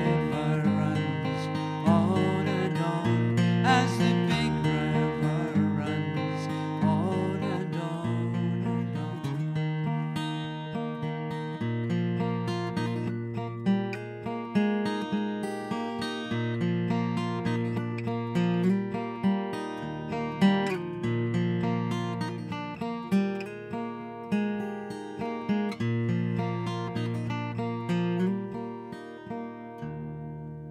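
Solo acoustic guitar playing an instrumental riff: a busy run of picked notes over a repeating, stepping bass line, its last notes ringing out and fading near the end.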